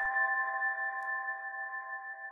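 The fading tail of an electronic intro sting: a held chord of a few steady, ringing synth tones slowly dying away.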